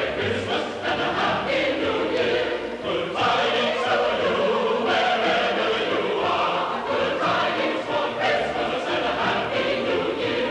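A choir singing, many voices together in one continuous passage.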